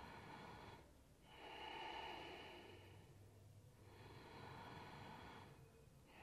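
Faint, slow, deep breaths in and out, each lasting about two seconds with brief pauses between them, in an Ashtanga yoga practice.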